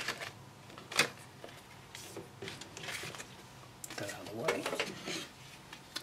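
Light handling noises: a small paper manual being leafed through and set down, then a plastic handheld laser tachometer picked up, with scattered soft clicks and taps.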